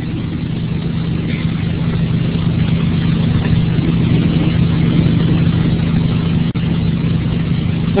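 Steady low hum with hiss, slowly growing louder, with a brief dropout about six and a half seconds in: background noise on the screencast recording's audio between narration lines.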